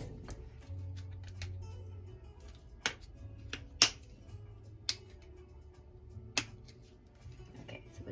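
Four sharp clicks about a second apart as the lid of a cinnamon jar is handled and opened, over faint background music.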